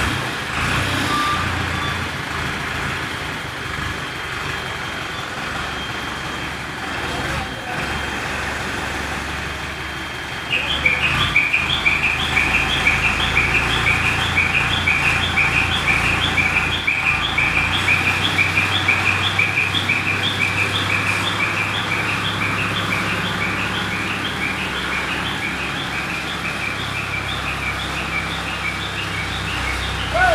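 Diesel engine of an Escorts Hydra 14 mobile crane running. About ten seconds in, the engine picks up and a high, evenly repeating chirping travel or reversing alarm starts, about three chirps a second, as the crane moves with its load.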